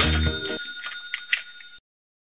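A bright, bell-like chime sound effect with several high ringing tones that fades away over about a second and a half, then cuts to silence. Background music ends about half a second in.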